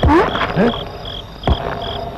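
Cricket chirps: a short high chirp repeating about three times a second, the night ambience of the soundtrack. A brief voice is heard at the start, and a single sharp knock about a second and a half in.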